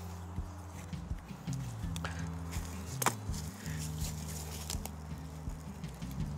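Soft background music with low sustained notes. Over it come scattered crunches and snaps of dry branches and footsteps on a forest floor of pine needles, as branches are moved aside. The sharpest snap is about three seconds in.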